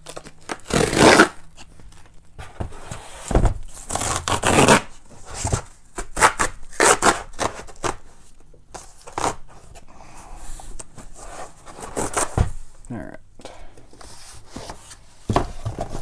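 A cardboard shipping box being opened by hand: tearing, scraping and rustling of tape and cardboard in irregular bursts, the loudest about a second in.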